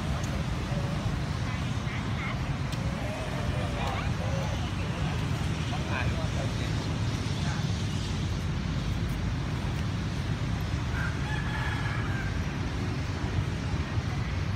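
Steady low rumble of motor traffic, with a few faint short calls and distant voices over it.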